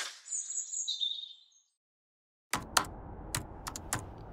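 A short whoosh with high bird chirps over it, fading out within about a second and a half. After a second of silence, a laptop keyboard is typed on: a run of sharp, irregular key clicks over low room noise.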